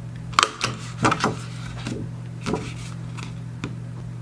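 Handheld single-hole paper punch clicking through cardstock, with several short sharp clicks and paper rustles as the card is handled and turned, over a steady low hum.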